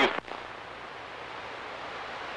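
Steady static hiss from a CB radio receiver in the gap between transmissions, after the last voice cuts off.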